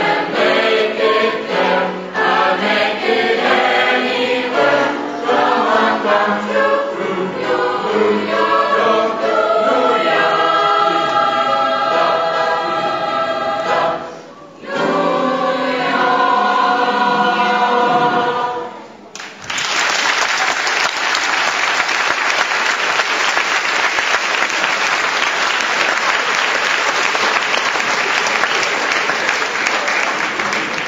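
Mixed youth choir singing, with a brief pause partway through; the song ends about two-thirds of the way in and the audience breaks into steady applause.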